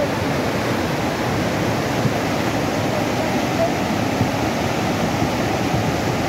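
A muddy river in flood (a huayco mudflow) rushing past in a steady, dense roar of churning water, heaviest in the low end.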